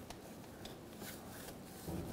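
Faint light ticks and rubbing of a plastic door sill trim plate being handled and set into place by gloved hands, with a soft thump near the end.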